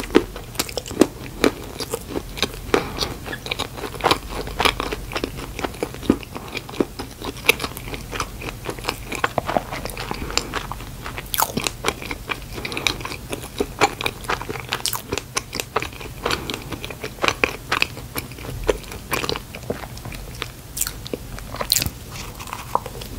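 Close-miked ASMR chewing of a cream-filled glazed donut: many small sharp wet mouth clicks, with another bite taken near the end.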